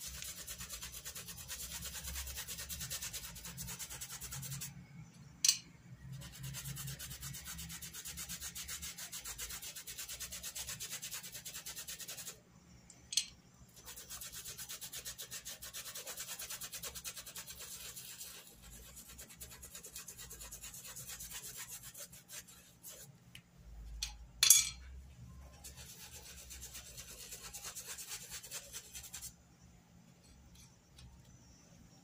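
A Pituá paintbrush scrubbed in fast circular strokes over fabric, spreading blue fabric paint: a steady, scratchy rubbing. It pauses three times, around 5, 13 and 24 seconds in, and each pause holds one sharp click, the loudest near the end.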